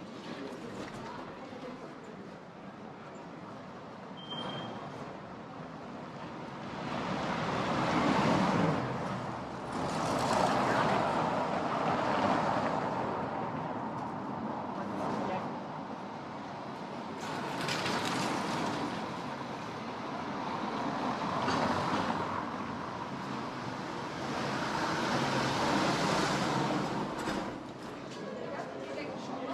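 Street ambience: a series of vehicles pass one after another, each rising and fading over a few seconds, over a background of people talking.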